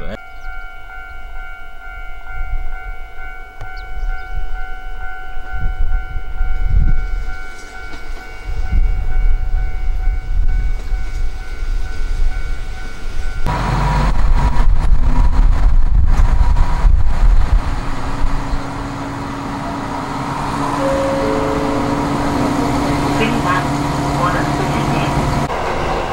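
Diesel railcar running with a steady high whine over a low engine rumble at the station. About halfway it is heard from inside the car: the engine grows louder for a few seconds as the train pulls away, then settles to a steady running drone.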